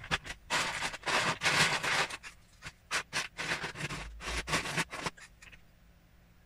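A hand rummaging through a plastic tub of loose Lego bricks: the plastic pieces clatter and scrape against each other and the tub in several bursts, stopping about a second before the end.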